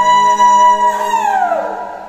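A high sung note held steady on one pitch, then sliding down and fading out about a second in: the closing note of a vocal group's song.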